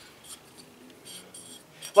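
Faint, scattered metallic clinks and handling noise from a small-block Chevy piston being turned over in the hands, a few light ticks near the start and again a little past the middle.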